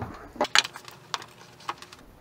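A few light clicks and ticks of metal and plastic as an alternator's rectifier and regulator assembly is worked free of its housing by hand. The loudest cluster comes about half a second in, with single clicks after.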